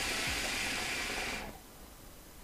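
A hookah being drawn on through an ice-filled mouthpiece: a steady airy hiss of smoke pulled through the water that stops about one and a half seconds in.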